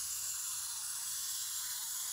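Wind-up clockwork motor of a Zoids Wild Gusock plastic model kit running as the kit walks, a steady high whir.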